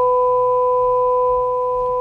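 A chord of pure sine-wave tones generated by the Ounk Python audio library, held at a fixed pitch and cut off abruptly at the end. The pitches do not move because the wrong example was played, one without the random pitch modulation.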